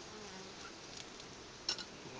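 Faint, steady buzzing of honeybees from an open hive. Two light clicks near the end.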